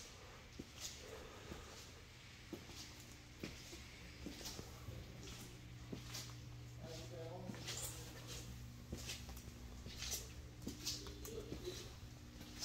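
Faint footsteps and small clicks of someone walking on a concrete shop floor over a steady low hum. A brief faint wavering, voice-like sound comes about seven seconds in and again near the end.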